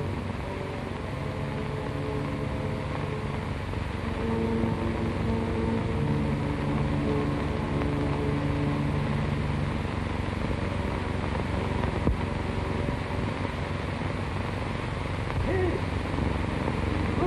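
Film score music of long, slow held notes that fade out about ten seconds in, over the constant hiss and hum of an old, worn film soundtrack, with one sharp click about twelve seconds in.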